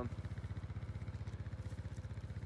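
Small engine idling steadily nearby, with an even low pulse of about twelve beats a second.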